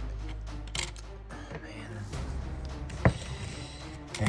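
Soft background music under small plastic clicks of LEGO pieces being handled and pulled apart, with one sharp click about three seconds in.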